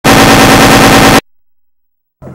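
A very loud, harsh electronic buzz with a fast, even rattle through it. It cuts off abruptly after about a second and is followed by silence. It is a glitch in the recorder's audio at the start of a VHS transfer.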